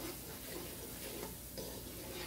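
Tomato-and-spice masala frying in hot oil in a pan, a faint steady sputter with light ticks as a wooden spatula stirs and scrapes through it.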